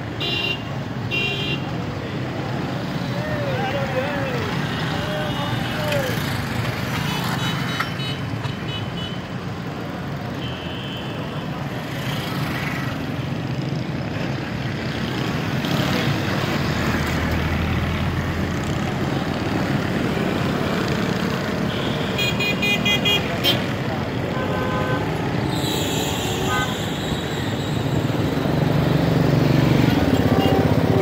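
Busy street traffic at a roundabout: motorcycles and auto-rickshaws running past, with short horn toots several times, a cluster of them a little after the middle. A motorcycle passes close about halfway through, and voices murmur in the background.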